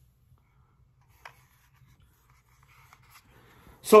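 Faint handling of a molded holster with a pistol seated in it, held in the hands: a light click about a second in, then soft rubbing and ticking.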